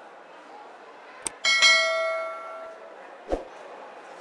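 A single bell-like metallic ring that fades away over about a second and a half, with a sharp click just before it. A short dull knock comes near the end.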